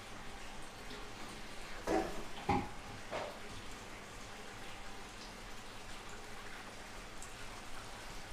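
Aquarium siphon draining tank water: a steady faint trickle, with a couple of soft knocks about two to two and a half seconds in.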